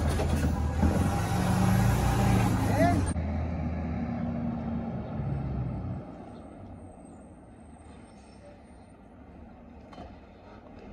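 Heil Rapid Rail side-loading garbage truck's engine revving up close by, rising in pitch. About three seconds in it cuts to a quieter, distant garbage truck running down the street, which drops lower again about six seconds in.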